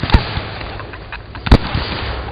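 Aerial fireworks shells bursting: a sharp bang just after the start and a louder one about a second and a half in, with smaller pops in between.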